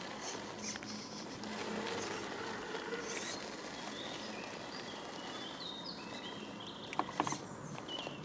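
Small electric RC crawler running slowly over sandstone, its motor and gears whining faintly while the tyres grip and crawl, with a few sharp knocks about seven seconds in as the truck climbs onto the rock face.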